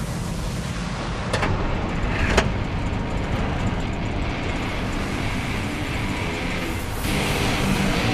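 Engine of a vintage truck running steadily as it drives, with two sharp clicks about one and two and a half seconds in.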